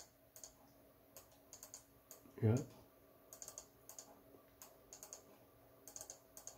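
Scattered light clicks of a computer mouse and keyboard, one to three a second, as lines are drawn on a charting screen.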